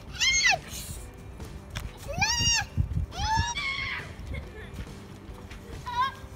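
A young girl's excited high-pitched squeals, three of them: at the start, about two seconds in and just after three seconds, each rising and falling in pitch. Low, uneven thuds run underneath.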